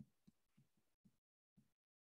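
Near silence, with a few very faint low thuds.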